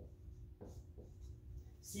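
Dry-erase marker writing on a whiteboard: a few faint, short strokes over a low, steady room hum.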